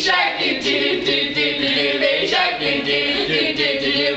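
A group of voices singing a song together without instruments.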